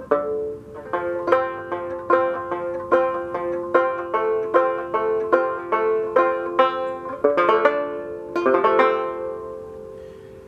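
Fretless open-back banjo, a Fairbanks Special No. 4, picked in a steady rhythm of ringing notes, about two to three a second. The picking stops about a second before the end and the last notes ring out.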